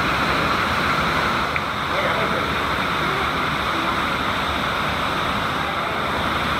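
Steady, muffled rush of moving water heard with the camera submerged in an aquarium tank.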